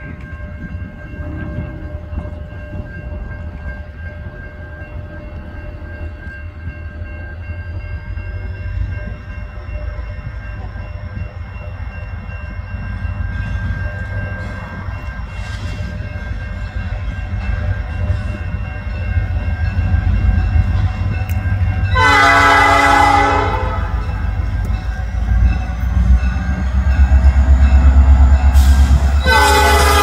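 Diesel locomotive Illinois Central 3108 approaching, its engine rumble growing louder. It sounds its horn twice: a short blast about two-thirds of the way through, and another starting near the end.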